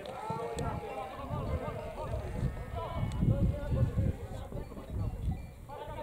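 Distant shouts and calls from voices on and around a football pitch, loudest in the first second or two, over low outdoor rumble.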